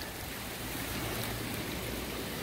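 Steady hiss of running water, with no breaks or separate knocks.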